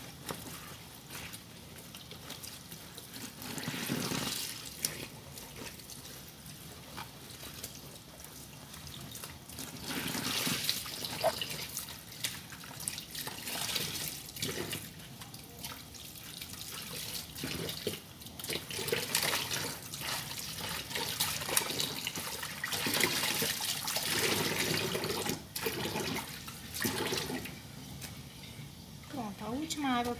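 Laundry being rinsed by hand in a laundry tub under a running tap: water running and splashing as wet clothes are sloshed and squeezed, in irregular surges.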